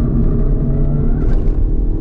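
Renault Megane RS 280's 1.8-litre turbocharged four-cylinder engine running at steady revs, heard from inside the cabin over a low road rumble.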